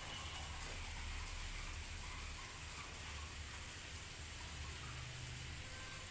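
Water running steadily from the tap of a salon shampoo basin into the sink, a constant hiss of flowing water.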